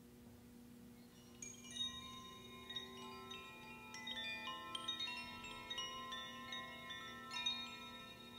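Two hand-held Koshi-style tube chimes being shaken, tinkling in many overlapping ringing notes that start about a second and a half in and build up. A faint steady low drone runs underneath.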